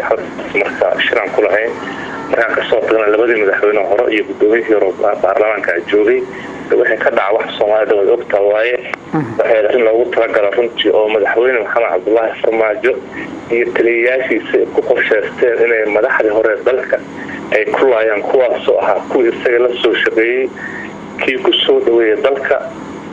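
A man speaking steadily, with only short pauses between phrases.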